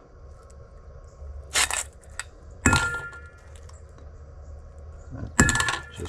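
Broken steel gear-tooth chips and a broken bolt clinking and rattling in a stainless steel bowl as it is handled, with a few sharp clinks that leave the bowl ringing briefly, one about a third of the way in and one near the end.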